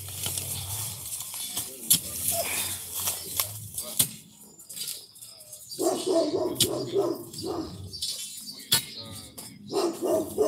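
A steel digging bar striking into rocky soil in a post hole, with several sharp knocks. A dog barks a few times in the second half.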